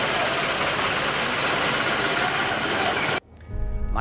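A steady, rattling engine noise against outdoor noise, cut off suddenly about three seconds in. Music with a deep bass note begins just after.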